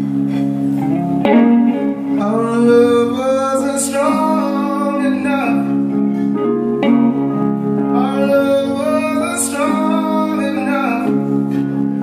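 Live music: a man sings two long, drawn-out phrases over electric guitar and stage piano.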